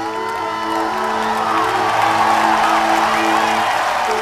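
Sustained electronic keyboard chords held under an audience cheering and whooping, the cheering swelling from about a second in.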